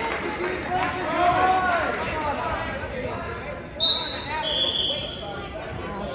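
Indistinct shouting voices, then a referee's whistle blown to stop the wrestling: one short, sharp blast almost four seconds in and a longer blast about half a second later.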